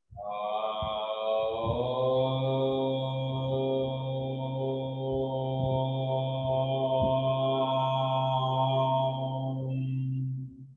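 A man chanting a mantra: one long syllable held on a single steady low note for about ten seconds in one breath, the vowel changing about a second and a half in.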